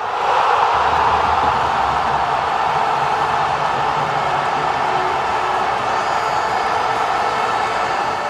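Steady rushing noise from the animated logo outro's sound track, with no speech.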